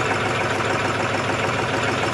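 John Deere tractor's diesel engine idling steadily.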